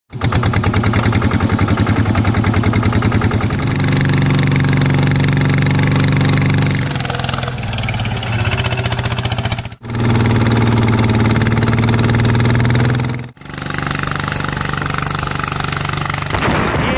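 Single-cylinder diesel engine of a two-wheel rice-paddy tractor running hard under load as its iron cage wheels churn through flooded mud, a loud, rapid, steady chugging. The sound shifts abruptly a few times, with two brief dropouts in the second half.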